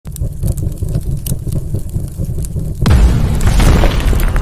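Cinematic explosion sound effect for an intro: a low rumble with scattered crackles, then a loud boom just under three seconds in that drops in pitch.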